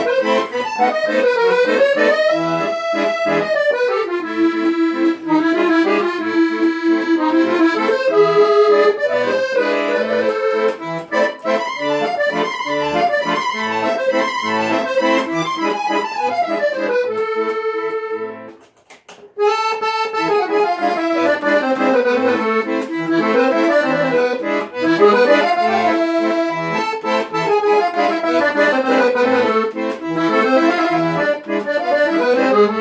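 Marinucci piano accordion with musette tuning playing a musette waltz: a melody line over a regularly pulsing waltz bass accompaniment. The music breaks off for a moment about two-thirds of the way through, then carries on.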